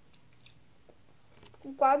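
A child chewing food, heard as faint soft mouth clicks, then a girl's voice near the end saying "Subscribe".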